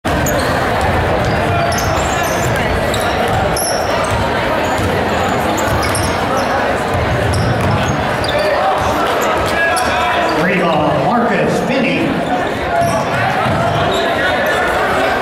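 A basketball being dribbled on a hardwood gym floor during a game, with spectators' voices and shouts filling the hall throughout.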